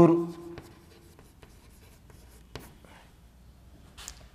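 Chalk writing on a chalkboard: a run of short taps and scratches as a word is written out, the loudest tap about two and a half seconds in.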